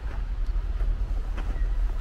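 Steady low rumble of city traffic, with a couple of footsteps on packed snow.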